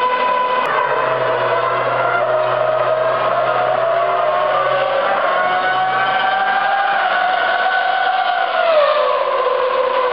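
Formula One car's engine running in the pit garage, held at steady high revs. The pitch dips just under a second in, climbs slowly over the next several seconds, and falls back shortly before the end.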